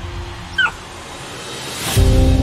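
A puppy gives one short, high whimper about half a second in. Near the end a whoosh swells up.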